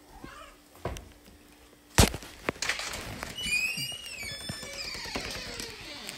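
A sharp click about two seconds in, then a household pet's high-pitched, wavering vocal call that bends up and down and trails off falling near the end.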